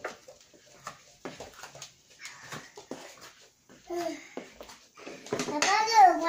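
A toddler's voice: a short "uh" about four seconds in, then a louder, longer babbling call near the end, over scattered light taps and rustles.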